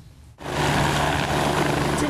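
Helicopter hovering low, its rotor and engine making a steady loud noise with a low hum that cuts in about half a second in.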